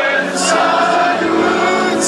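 Live music played loud over a large concert sound system, with long held sung vocals. A brief high hissing sweep comes about half a second in and again at the end.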